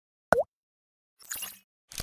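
Sound effects of an animated TV channel logo sting: a short pitched pop, its pitch dipping and rising again, about a third of a second in. Then come two brief hissy swishes, one about a second later and a shorter one near the end.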